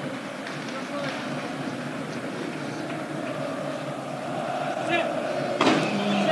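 Crowd noise from a packed football stadium, a steady din that swells toward the end, with a sudden louder surge about five and a half seconds in.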